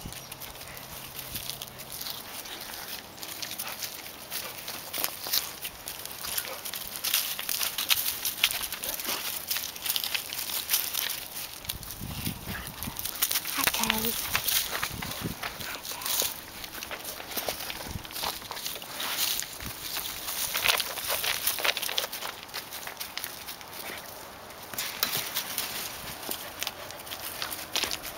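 Dry fallen leaves and wood chips crunching and rustling under the paws of two wolves as they walk and sniff about, in irregular bursts of crackle.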